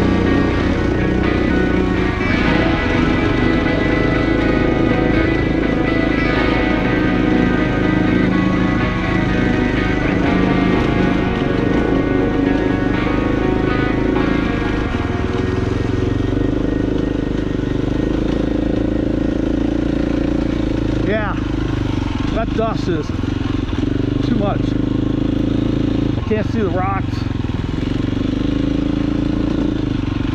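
Background music laid over a KTM dirt bike's engine running along a trail; the music thins out about halfway, leaving the engine more exposed.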